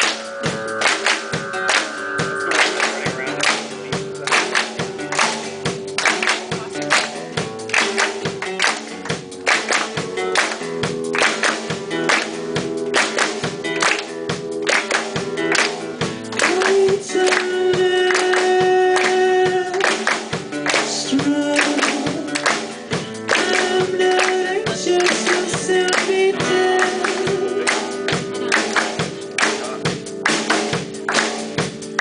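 Live band playing: a hard-strummed acoustic guitar, bass and a lead singer, with sharp hand claps and strokes keeping a steady, quick beat. The singer holds a long note about two-thirds of the way through.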